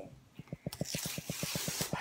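Tear strip being ripped along a paper mailer envelope to open it: a fast rattle of clicks with a tearing hiss, starting about half a second in and lasting about a second and a half.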